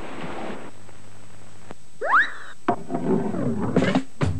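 Sound effects from a 1980s TV commercial. After a soft hiss, a quick rising whistle-like glide comes about halfway through, then a sharp knock, then a wavering voice for the last second or so.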